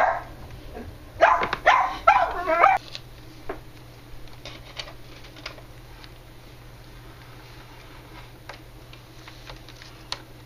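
A dog barking: one bark at the start, then a quick run of several barks about a second later. After that come only faint ticks and taps of hand work on a plastic model.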